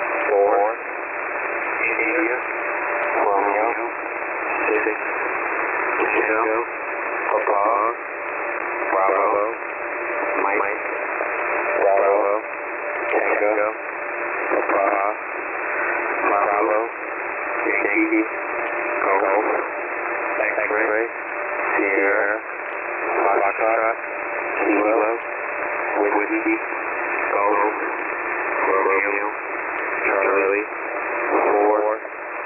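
HFGCS military shortwave single-sideband voice broadcast: an operator reads an Emergency Action Message letter by letter in the phonetic alphabet, one word about every second. The voice is narrow and telephone-thin and heard through steady static hiss, with a faint steady tone under it.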